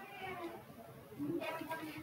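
Faint voice-like sounds that rise and fall in pitch, one at the start and another near the end.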